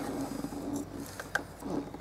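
A brief low voiced hum, then a few faint clicks of fingers handling the plastic plug on a diesel common rail fuel pressure sensor.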